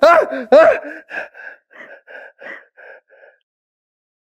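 Frightened screaming of "ah!", loud at first, then breaking into a string of shorter, fainter cries about three a second that die away a little after three seconds in.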